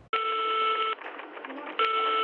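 Telephone ringing tone heard down the line: a steady beep, sounding twice, each just under a second long, as an outgoing call rings before it is answered.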